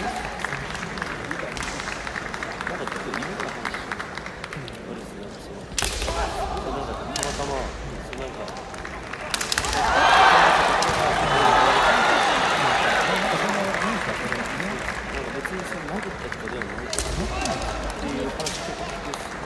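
Kendo bout on a wooden arena floor: several sharp cracks from bamboo shinai strikes and foot stamps, with the fighters shouting their kiai. The loudest stretch is a burst of shouting about ten seconds in that runs for a few seconds.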